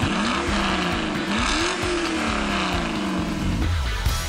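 Racing-car engine sound effect, revving up and falling away several times, with music behind it.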